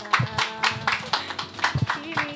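Scattered hand-clapping from a small audience, irregular and several claps a second, with quiet music underneath.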